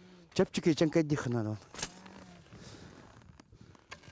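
A man's voice for about a second, then a single sharp metallic clink with a high ringing as a steel animal trap is handled.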